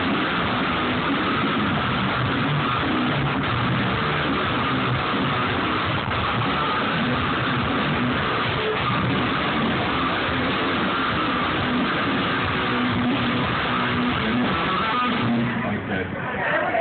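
A rock band's electric guitar played loud through a large PA system during a sound check. The playing is dense and continuous, and stops shortly before the end.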